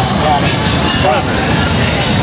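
A motorcycle engine running steadily, mixed with indistinct voices of people talking.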